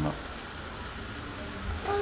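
Tattoo machine running with a steady low hum as its needle shades the skin.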